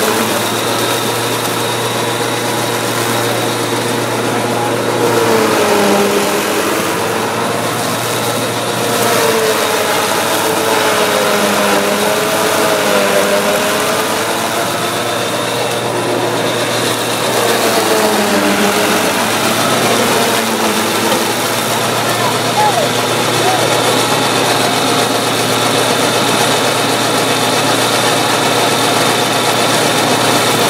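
Tractor engine driving a PTO fodder chopper, running steadily while the cutter head chops green maize for silage. The pitch sags and recovers several times as fodder is fed in and the load comes on.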